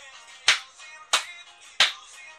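Hand claps in a steady beat, about three sharp, loud claps evenly spaced across two seconds, with a song playing quietly underneath.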